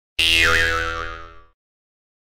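A comic 'boing'-style sound effect added in editing: one pitched twang that starts abruptly, dips and wobbles in pitch, and fades out after about a second and a half.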